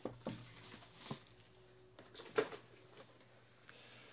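Faint handling of a cardboard trading-card box as it is unwrapped and opened: a few brief soft rustles and knocks from the plastic wrapper, the sleeve and the lid.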